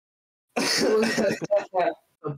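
A man's voice starting about half a second in: a harsh vocal burst lasting about a second, then two short syllables.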